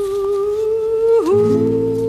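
Background music: a single sustained melody note with a slow vibrato, which dips in pitch and settles on a slightly higher note about a second in, as held chords come in underneath.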